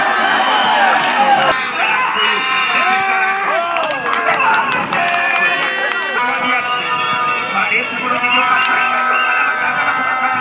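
Football crowd shouting and cheering, many overlapping voices without a break, with some held high tones in the second half.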